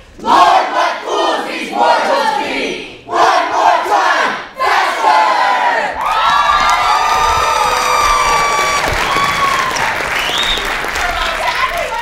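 Many voices of a stage cast shouting together, loud, in two short bursts and then one long held group yell from about five seconds in.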